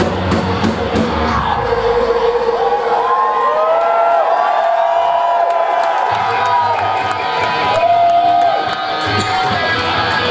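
A heavy metal band's drums and bass drop out about two seconds in, leaving a sustained guitar note ringing. A club crowd cheers and whoops loudly over it, and the low end of the band comes back in partway through.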